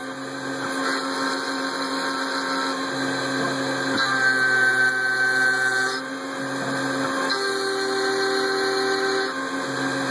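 Spindle of a Tormach 770 head turning a 3/16-inch three-flute carbide endmill at about 8,000 RPM, side-milling 2024-T351 aluminium: a steady whistling cutting tone. Its pitch pattern shifts every second or two as the hand-jogged width of cut changes.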